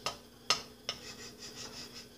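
Wooden spoon scraping lightly around a nonstick frying pan, with three sharp taps of the spoon against the pan in the first second.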